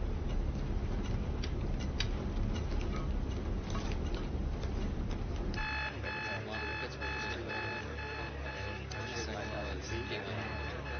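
Electronic alarm beeping from a radar console, starting about halfway through and pulsing about twice a second, as an aircraft drops off the radar. Before it there is a low rumble with scattered clicks.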